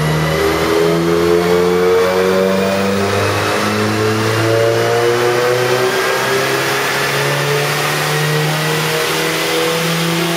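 Turbocharged Ford Festiva's engine running hard under load on a chassis dyno, its pitch climbing slowly and steadily as the revs rise through a pull.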